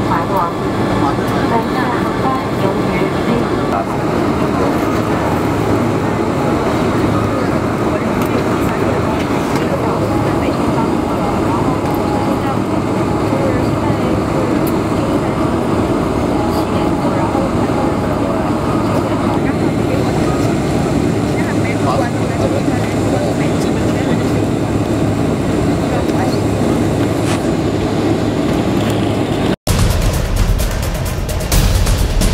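Cabin noise aboard a Boeing 747 taxiing after landing: a steady rumble from the jet engines and airframe, with passengers talking over it. The sound cuts off suddenly near the end.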